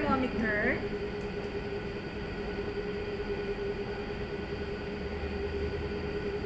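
Steady mechanical hum with a constant mid-pitched tone throughout, as from a running room appliance; a brief voice is heard in the first second.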